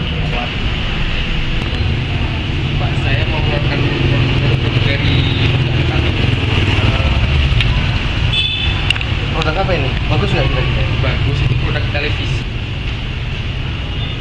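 Outdoor background noise: a steady low rumble with a constant hiss, and quiet indistinct voices in the second half.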